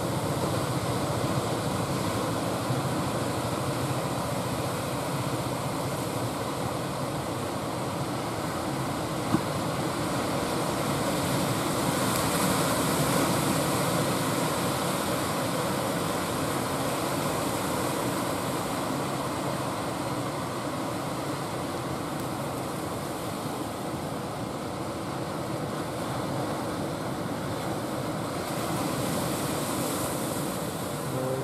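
Steady wash of surf with wind noise on the microphone, swelling slightly about twelve seconds in, with one brief tap about nine seconds in.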